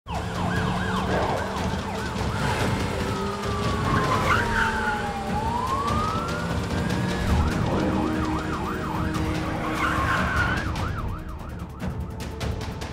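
Police sirens wailing over a steady low hum. In the middle a single siren makes one long slow fall and rise in pitch, and near the end there are fast repeated yelps, several overlapping.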